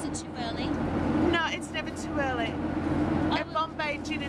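Steady low drone of an airliner cabin, with people's voices briefly talking over it twice.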